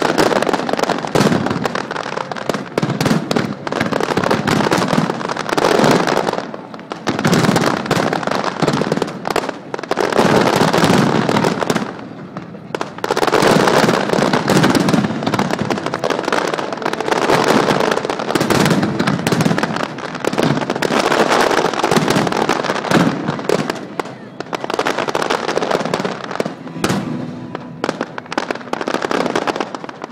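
Aerial fireworks display going off in a dense barrage: rapid, overlapping bangs and crackling from many shells, coming in waves with a few brief lulls.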